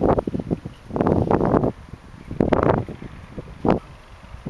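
A pack of sled dogs eating from steel food bowls, heard as about four short, noisy bursts, the last one sharp.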